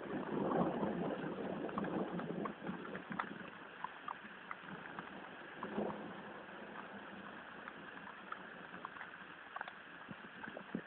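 Steady rain during a thunderstorm: an even hiss with scattered ticks of single drops, with a louder swell in the first two or three seconds.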